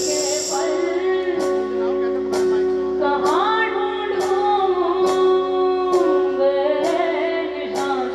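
A female singer singing a melody into a handheld microphone over a backing track, with held chords and a steady beat about once a second.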